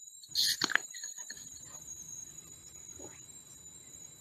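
A brief rustle of a wired earphone's cable and inline microphone rubbed by a hand about half a second in, then faint hiss with a few small ticks. A faint steady high-pitched electronic whine lies underneath.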